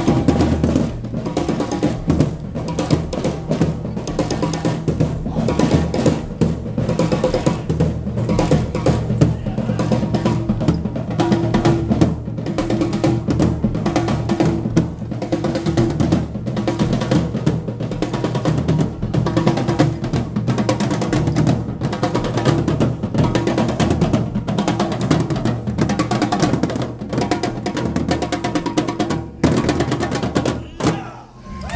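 Several marching snare drums played together in a continuous, dense pattern of fast strokes.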